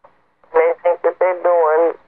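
Only speech: a brief pause, then a voice talking from about half a second in.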